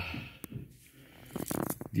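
A few faint, sharp clicks and taps: one about half a second in, then a quick cluster near the end. They are the sounds of hands and tools being handled during valve adjustment.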